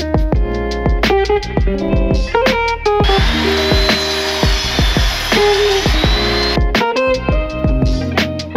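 Background music, with a Ryobi sliding miter saw running for about three and a half seconds in the middle. Its whine dips and recovers as the blade cuts through a wooden board.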